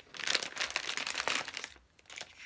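Crinkling of a glossy plastic Fingerlings blind-bag wrapper as it is handled and its contents are pulled out: a dense run of fine crackles that dies down near the end.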